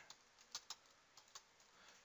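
Faint computer keyboard keystrokes: about half a dozen separate taps as a word is typed into a form field.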